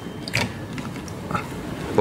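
Handset of an ornate brass telephone being picked up off its cradle: two short clicks about a second apart as it is handled.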